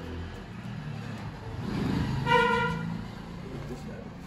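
A vehicle horn gives one short, steady toot a little over two seconds in, over the low rumble of passing road traffic.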